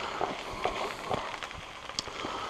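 Fried rice sizzling in a skillet as cooked bacon pieces are tipped and scraped in from a plastic bowl, with a few light ticks and taps scattered through and a sharp click at the end.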